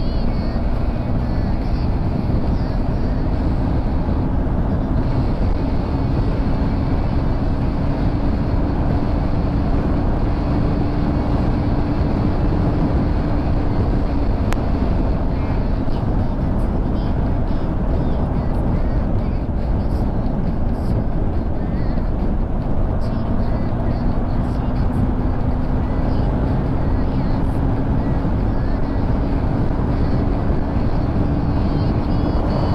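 Motorcycle cruising at steady expressway speed: loud wind rush on the microphone over a steady engine hum that creeps up in pitch in the first half and again near the end.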